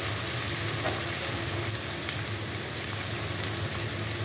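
Goat meat frying in oil in an iron karahi: a steady sizzle with fine crackling throughout.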